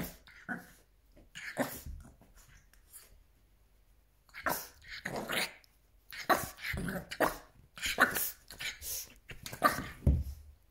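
French Bulldog puppy yapping and growling in rough play at a larger dog, in short bursts: a few early on, a quiet spell, then a dense run through the second half.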